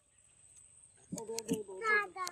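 Almost silent for about a second, then a voice sounds in the background, along with a few light clicks.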